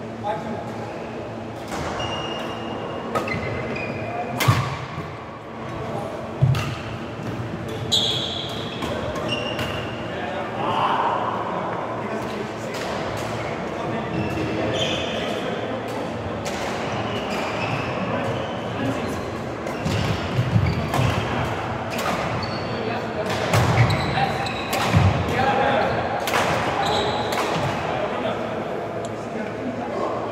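Badminton rallying in a sports hall: irregular sharp racket strikes on a shuttlecock and short squeaks of shoes on the court floor, echoing in the large hall.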